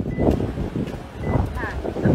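Indistinct voices talking in the open air, with wind rumbling on the microphone.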